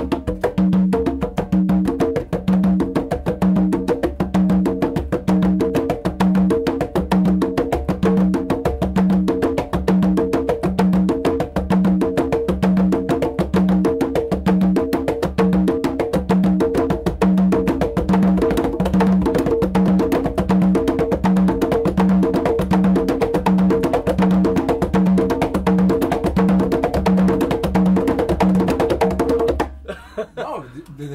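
Two congas played together in an interlocking rumba rhythm. It is a fast, even pattern of open tones at a low and a higher pitch, and it stops suddenly right at the end.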